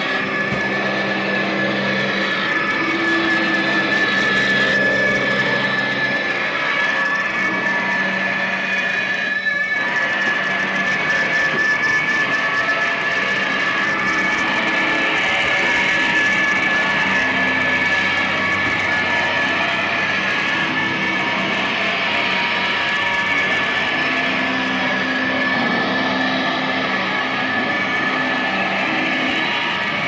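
Live noise music: a continuous wall of harsh electronic noise and electric guitar, with a steady, slightly wavering high whine running through it. Held low drones come and go, and the din thins briefly about ten seconds in.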